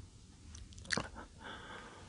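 Faint crunching footstep on a gritty tiled floor about a second in, followed by a short, soft breath.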